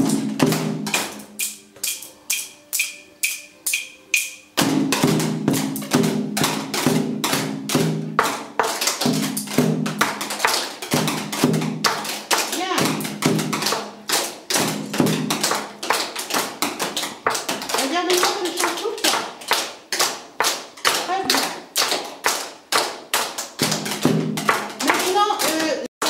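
Hand-held sticks tapped in a steady rhythm, about two strokes a second at first and quicker later on. Children's voices sing in time with the taps from about four seconds in.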